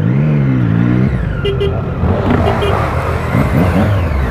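Honda CB600F Hornet's inline-four engine revving up and easing off in the first second. A steady rush of engine and wind noise follows, with another short rise in engine pitch near the end.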